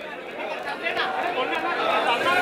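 Crowd chatter: many people talking at once in a large gathering, growing a little louder.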